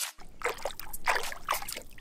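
Lake water sloshing and trickling around a hand holding a bass in the water beside a boat hull, with irregular small splashes over a steady low rumble.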